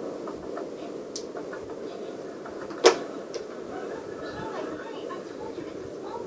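Plastic clicks from handling a medication syringe on a feeding-tube extension line: a faint click about a second in and one sharp click about halfway through, over steady low background noise.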